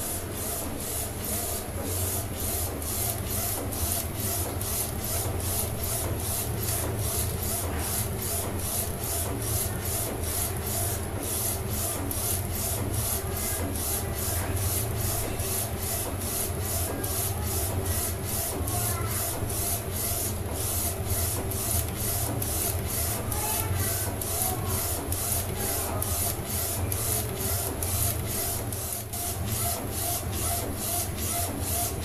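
Neixo A3 DTG flatbed printer printing on a T-shirt: the printhead carriage shuttles back and forth over a steady low motor hum. There is an even, rhythmic pulse of about two to three a second.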